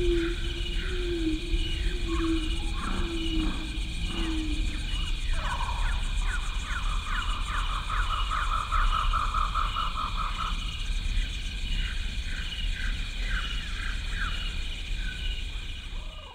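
Insects chirping steadily, mixed with other animal calls, including a fast trill that lasts about five seconds in the middle.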